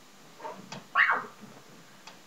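A person's short, high-pitched squeal that rises in pitch, about a second in, during play-wrestling, with a fainter vocal sound and a light knock just before it.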